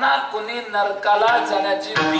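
A man singing a devotional line in the style of a Marathi kirtan, his voice gliding and holding notes.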